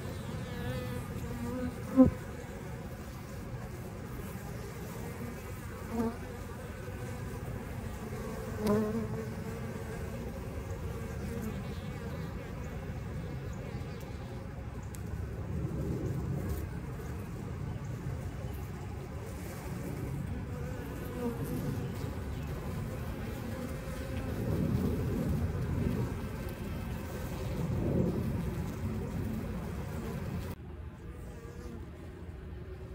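A swarm of honey bees buzzing close up as they are handled on a hive's landing board: a low, steady hum that swells several times. A sharp tick comes about two seconds in, and softer ones follow a few seconds later.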